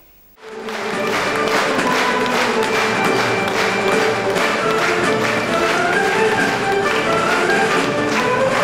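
Live instrumental folk music from a Kazakh stage orchestra playing a dance tune, with a steady beat. It starts about half a second in.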